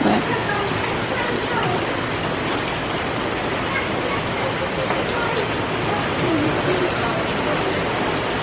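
Heavy rain mixed with hail pelting a wet paved path: a steady, dense hiss with scattered sharper ticks.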